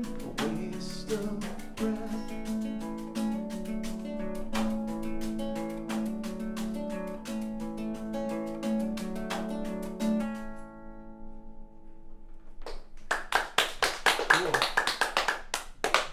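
A song ending on archtop guitar and drums, the last chord ringing out and fading about ten seconds in. A few people then clap.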